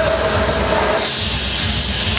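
Loud show music with a steady beat; about a second in, the beat drops away and a bright hiss takes over.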